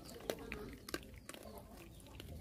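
Dogs eating from a ceramic bowl: quiet chewing with a few sharp clicks of teeth and food against the bowl.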